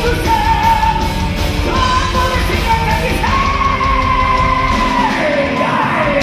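A heavy metal band playing live in a hall, with drums, bass and distorted guitars under long held high melody notes that slide from one pitch to the next, recorded from the crowd.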